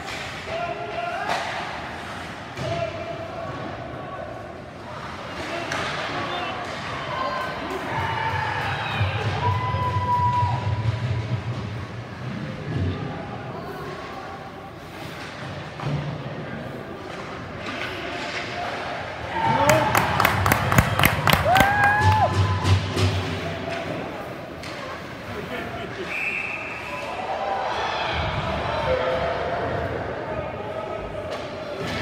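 Sounds of an ice hockey game in an indoor rink: scattered sharp clacks and knocks of sticks, puck and boards, with a loud rapid clatter of knocks about two-thirds of the way through, and shouting voices now and then.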